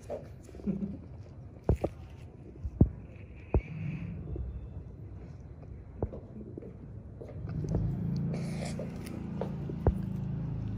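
A handful of sharp, isolated clicks or taps, with a low murmur building near the end.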